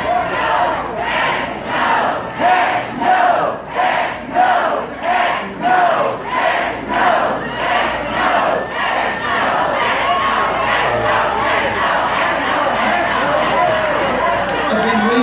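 Rally crowd chanting in unison, one short shout repeated about every 0.6 s, which loosens into general crowd noise and scattered voices a little past the middle.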